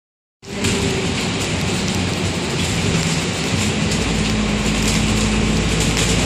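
Cabin noise on board a moving bus: steady engine drone and road rumble, cutting in abruptly about half a second in. A deeper rumble grows about four seconds in.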